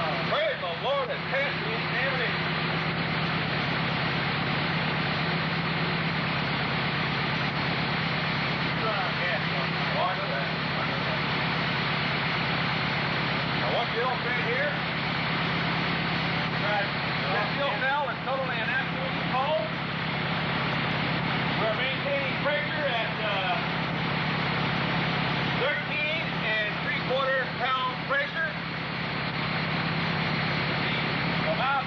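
A dune buggy engine idling steadily, a constant low hum with a dense noisy rush above it, which the demonstrator says is running off a water fuel cell. Indistinct voices talk over it now and then.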